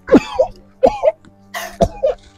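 A man coughing three times in short, harsh bursts, as in an acted asthma attack. Soft background music plays underneath.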